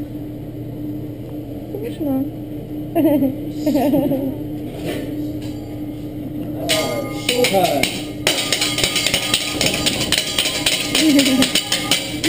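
Hibachi chef's metal spatulas clacking rapidly on a steel griddle, starting about seven seconds in, with a loud sizzle of food on the hot plate from about eight seconds in. A steady hum runs underneath.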